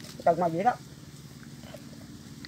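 A man's voice saying one short word, then low steady background hum.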